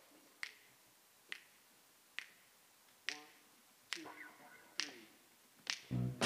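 Finger snaps counting off a steady tempo, about seven sharp snaps a little under a second apart. The jazz band comes in at the very end.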